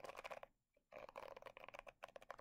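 Fingers running over the plastic bristles of a Tangle Teezer Ultimate Detangler hairbrush: faint rapid clicking, with a short pause about half a second in.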